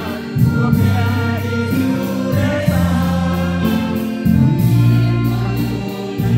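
A mixed group of men's and women's voices singing a gospel hymn through microphones. Underneath, a low accompaniment holds each bass note for a second or two.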